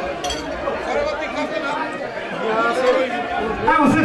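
Many people chatting at once, their voices overlapping into a general hubbub.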